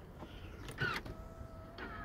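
Power-folding third-row seat of a 2017 Audi Q7 raising, its electric motor giving a faint steady whine from about halfway through. A brief high gliding sound comes just before the whine starts.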